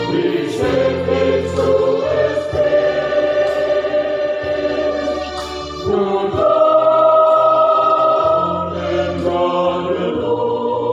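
Background music: a choir singing long held chords over a bass line, growing louder about six seconds in.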